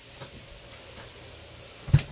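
Hot bacon fat sizzling steadily and faintly around freshly roasted potatoes in a glass baking dish just out of the oven. A single dull thump sounds just before the end.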